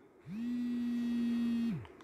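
A steady low hum, held at one level pitch for about a second and a half, with a smooth start and end.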